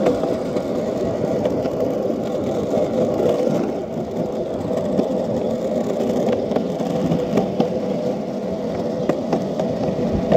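Small hard wheels rolling steadily over concrete pavement, a continuous rumble with a faint steady whine and a few sharp clicks in the second half.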